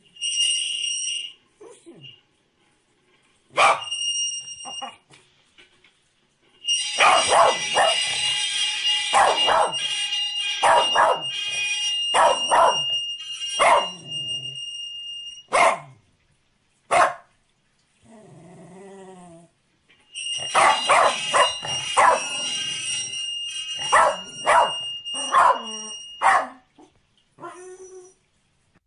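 A corgi barking in quick runs of sharp barks, with short pauses between the runs. A steady high beeping or whistling tone sounds along with most of the barking.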